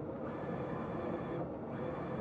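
Wide-format inkjet printer running as it prints, its print-head carriage making a steady, fairly quiet mechanical sound.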